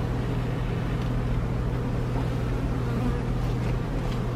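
Honeybees buzzing over an open hive as its frames are lifted out, a steady hum.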